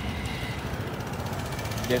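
Piaggio MP3 250's 249cc fuel-injected single-cylinder engine idling steadily.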